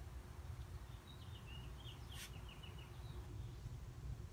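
Faint bird song: a quick run of short high chirps starting about a second in, stepping down in pitch, with one sharp click partway through, over a low outdoor rumble.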